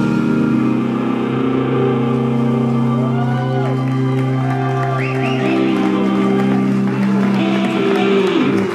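Live psychedelic rock band holding a sustained droning chord as a song rings out. A few short whoops or whistles rise over it, and crowd applause starts near the end.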